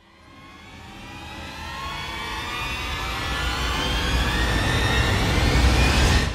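Cinematic riser sound effect: a rushing, jet-like noise with rising tones over a deepening low rumble, swelling steadily louder from silence to a peak near the end.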